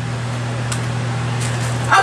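Steady low hum with faint background hiss, room tone in a pause between speech; a woman's voice starts again right at the end.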